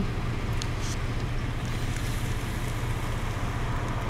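A car engine idling, heard as a steady low rumble from inside the car's cabin.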